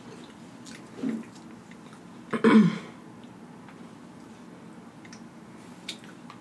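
A woman makes a short throat sound about a second in and a louder throat-clearing sound about two and a half seconds in, then a sharp click near the end as a spoonful of rice goes into her mouth.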